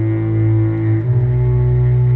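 Background music: slow, sustained low bass notes with a held chord above, the harmony shifting to a new note about a second in.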